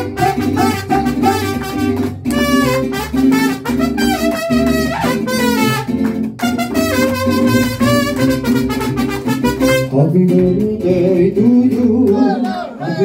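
A mariachi band plays an instrumental introduction: trumpets carry the melody over a guitarrón bass line and strummed guitars. About ten seconds in the trumpets drop out, leaving the strings.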